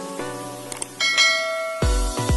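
Music of held keyboard chords; about a second in, a bright bell-like chime rings out, the notification-bell sound of a subscribe-button animation. Just before the end, an electronic dance beat with heavy bass kicks in.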